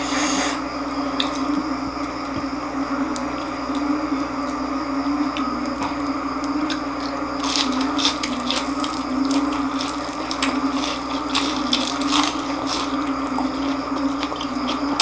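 Close-up crunching and chewing of crispy deep-fried pork intestine (chicharon bulaklak), with sharp crunches coming thick and fast from about seven and a half seconds in, over a steady low hum.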